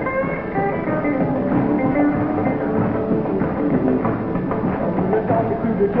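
Rock and roll band playing an instrumental break, led by a hollow-body electric guitar solo of quick single-note runs over drums. The sound is in the thin, narrow-band quality of an old TV recording.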